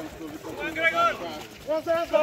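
Raised human voices shouting: one high-pitched call near the middle and another beginning near the end.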